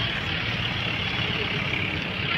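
Steady low rumble of heavy diesel engines: construction machinery and road vehicles running.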